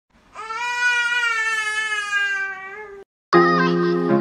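A young child's voice in one long, steady wail of about two and a half seconds that cuts off abruptly. About a third of a second later, intro music begins.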